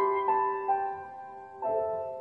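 Solo grand piano playing a slow piece: notes and chords struck three times in quick succession, each left to ring and fade, then a gap of about a second before the next chord.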